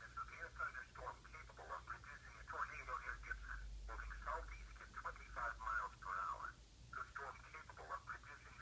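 An announcer's voice reading an Emergency Alert System tornado warning, thin and tinny as if through a small speaker, over a steady low hum.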